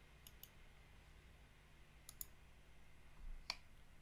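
Faint computer mouse clicks over near-silent room tone: two quick double clicks, then a louder single click a little past the middle.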